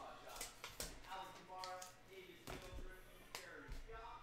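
Quiet room with faint low speech and about four light taps or clicks from hands handling items on a desk.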